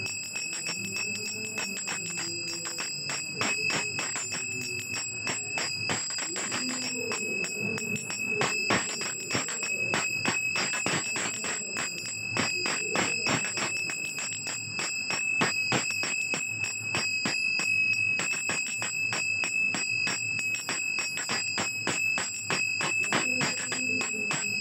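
Temple hand bell rung steadily for the Mangal Arati. Its ringing tone holds throughout, with rapid repeated strikes, over devotional music.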